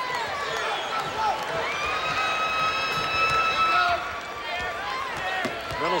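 Basketball arena crowd noise, with sneakers squeaking on the hardwood court as players cut and move. A steady high note holds for about two seconds in the middle.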